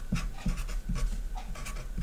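Marker pen writing on paper, a quick run of short scratching strokes.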